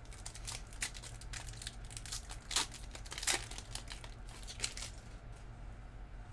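Foil wrapper of a Panini Prizm football card pack crinkling and ripping in the hands as it is torn open. It is an irregular run of sharp crackles, loudest a little past halfway and dying down near the end.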